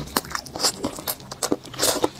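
Close-miked chewing and biting of saucy roast chicken: a run of crisp crunching clicks and moist mouth sounds, with a louder crunch near the end.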